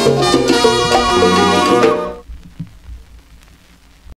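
A salsa orchestra's recording, played from a 45 rpm single, reaching its end. The full band with percussion stops about two seconds in, leaving only faint noise and a couple of clicks.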